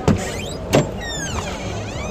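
A car door being opened on a 1996 Opel hatchback: two sharp clicks of the outer handle and latch, then a falling squeak as the door swings open.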